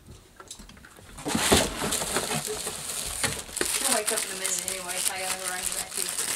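Plastic wrap on a pair of headlight assemblies crinkling and rustling with small clicks as they are handled in a cardboard box, starting about a second in after a short quiet spell.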